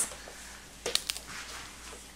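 Faint handling sounds from a plastic lead test swab being squeezed and turned in the fingers, with a few small clicks about a second in, as she works to crush the glass vials inside it.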